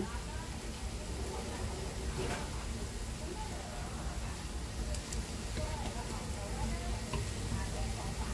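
Cassava patties shallow-frying in a pan of oil, a steady faint sizzle, with a few light clicks of wooden chopsticks turning them.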